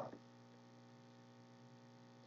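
Near silence: a faint, steady electrical hum in the recording's background.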